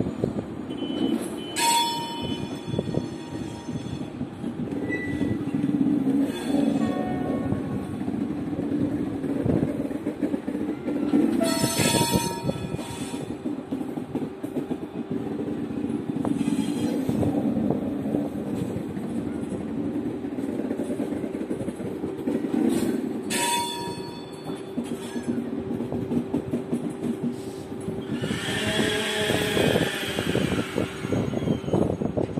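TGV trains in a rail depot: a steady low rumble, broken three times, about ten seconds apart, by a short sharp sound with a brief ring.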